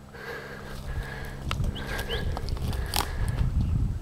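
Wind rumbling on a handheld camera's microphone, growing louder toward the end, with handling noise and the crunch of footsteps on sand and twigs.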